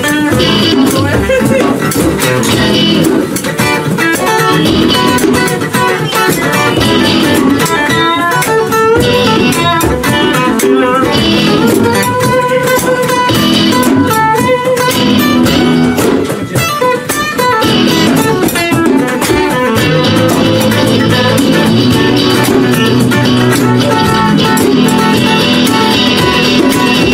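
Acoustic guitar and electric guitar playing together live in an instrumental passage, with no singing.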